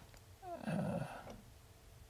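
A man's brief, hesitant "uh" lasting under a second, then faint room tone.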